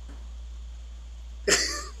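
Quiet room tone with a low steady hum, then near the end a man's single short, breathy burst of laughter.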